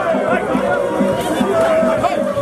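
A crowd's voices, chatter and singing, mixed with music, at a steady level with no pause.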